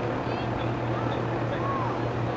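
A steady low mechanical drone with a noisy rumble, and faint distant voices calling a couple of times.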